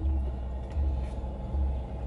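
Car cabin noise while driving: a steady low rumble from engine and road that swells and fades.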